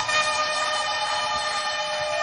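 A single sustained musical note, held steady and unchanging, with a faint murmur of the congregation beneath it.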